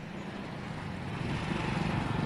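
Road traffic: a vehicle's engine and tyre noise growing steadily louder as it draws near.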